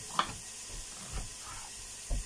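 Carrots frying in a pan, a steady sizzling hiss, with one short faint sound just after the start.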